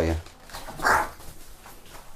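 A pet crow gives one short, harsh caw about a second in.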